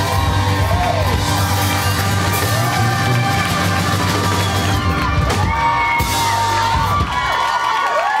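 Live rock band of acoustic and electric guitars, bass, drums, piano and organ playing the closing bars of a song, with the audience whooping and cheering over it. The bass and drums drop out about seven seconds in as the song ends.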